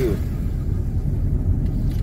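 Steady low rumble of a moving vehicle, its road and wind noise heard from on board.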